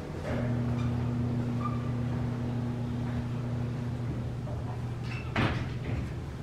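Elevator doors sliding shut, with the door operator's steady motor hum, which ends in one solid thud as the stainless-steel panels meet near the end.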